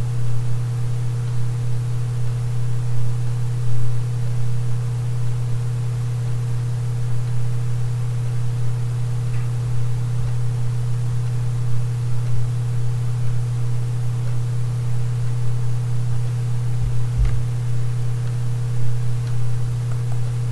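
Steady low electrical hum with a fainter higher steady tone over constant hiss, with a couple of faint clicks near the end.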